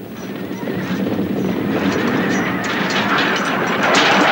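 Battle sound of horses galloping and neighing in a dense din that grows steadily louder.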